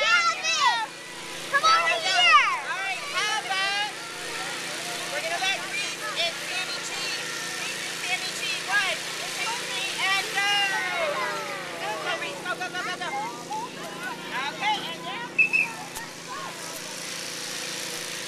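A group of young children chattering and squealing with excitement, with adult voices among them, over a steady motor hum.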